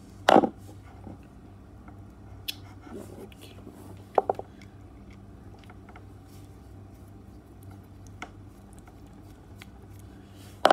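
Handling of an open plastic three-pin mains plug and its cable as the wires are fitted to the terminals: scattered small clicks and taps, the loudest just after the start and a short cluster of clicks about four seconds in, over a faint low hum.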